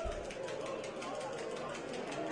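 Steady open-air stadium ambience during a football match: a low murmur of distant voices from the stands and pitch.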